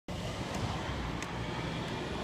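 Steady outdoor background noise: a low rumble under a faint hiss, with two faint ticks about half a second and a second and a quarter in.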